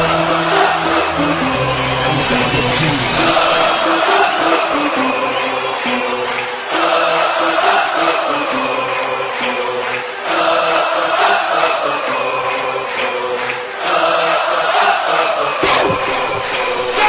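Background music: a song with sung vocals in repeating phrases, about one every three and a half seconds.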